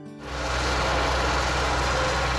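Wheeled tractor's diesel engine running steadily: a deep, even rumble with a broad rattle over it, coming in a moment after the start.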